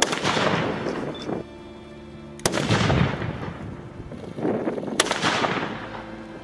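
Japanese matchlock guns (tanegashima) fired three times, about two and a half seconds apart, each sharp crack followed by a long rolling echo.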